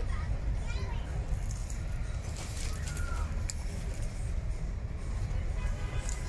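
Steady low outdoor rumble with faint, distant voices heard now and then.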